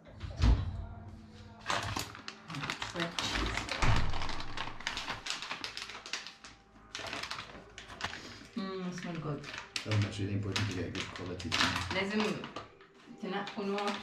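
People talking, with a stretch of dense crackling and clicking during the first half.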